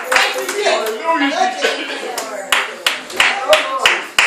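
Sharp, irregular hand claps, coming in quick runs in the second half, mixed with voices calling out over them.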